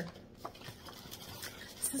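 A cardboard box being opened and handled: faint rustling with a few light taps.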